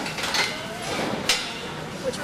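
Two sharp metallic clanks about a second apart, such as steel livestock pen panels and gates knocking, over a low murmur of voices.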